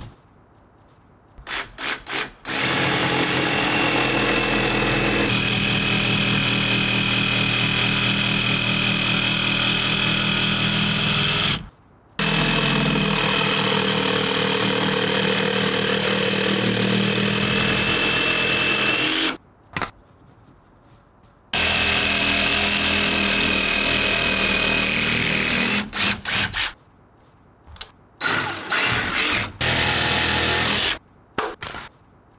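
A cordless jigsaw cutting a curved profile into the end of a timber beam. It runs with a steady high whine in three long runs with brief stops, then in a few short bursts near the end.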